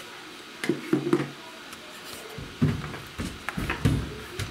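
Objects being handled and set down on a wooden workbench: a few irregular knocks and clunks, heaviest a little after the start and twice near the end.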